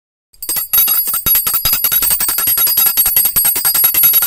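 Small brass puja hand bell (ghanti) rung rapidly and without pause, as at an aarti, starting just under half a second in.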